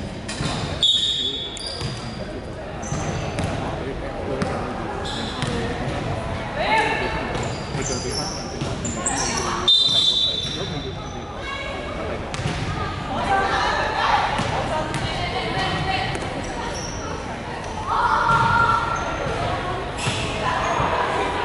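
Indoor basketball game in play: the ball bouncing on a wooden court, sneakers squeaking briefly, and players' voices calling out, all echoing in a large hall.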